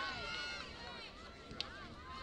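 Field hockey players' voices calling out on the field, fairly faint, with one sharp click about one and a half seconds in, typical of a stick striking the ball.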